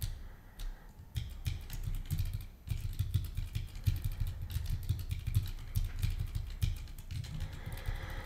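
Typing on a computer keyboard: irregular key clicks with dull low thuds underneath as code is edited.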